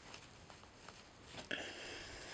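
Faint rustling and soft ticks of fingers handling and tucking a doll's braided hair, with a small click about three-quarters of the way through followed by a faint high tone.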